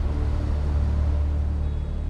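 A steady low rumbling drone that holds at an even level, with no speech over it.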